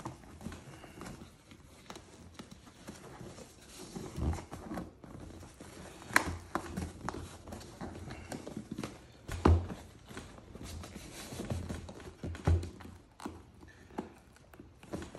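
Handling sounds of a vinyl seat cover being pulled and smoothed over a motorcycle seat's foam and plastic base on a workbench: irregular knocks and thuds, the loudest about nine and a half seconds in, with rustling in between.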